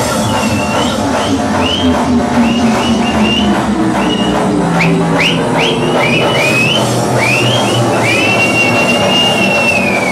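Hard dance music played loud through a club sound system from a DJ set. A high-pitched line rises in short glides over it, then holds one long note that falls away near the end.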